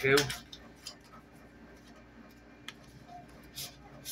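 Faint handling sounds of a mail package being opened by hand: a few light, separate clicks and rustles over a faint steady low hum.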